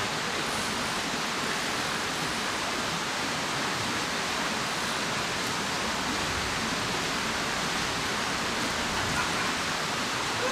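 Mountain stream rushing over rocks: a steady, unbroken rush of water.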